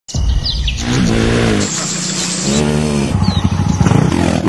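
Birds chirping briefly at the start, then dirt-bike engines revving twice, the pitch rising and falling each time.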